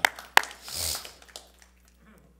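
A single sharp hand clap about a third of a second in, followed by a brief soft hiss.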